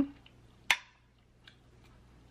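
A metal fork clinks once, sharply, against a plate as it cuts through a piece of salmon, about a second in, with a brief ring; a much fainter tick follows.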